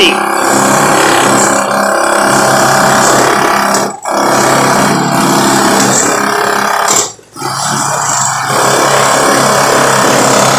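Construction machinery running with a steady, loud buzzing drone. It cuts out sharply for a moment about four seconds in and again for about half a second near seven seconds.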